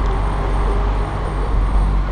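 Steady low rumble of a car driving slowly along a town street, picked up by a camera mounted on the car: engine, tyre and road noise.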